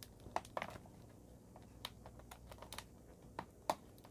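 Faint, scattered clicks and ticks of fingernails picking at packing tape stuck to a plastic container, with a few sharper clicks near the start and near the end.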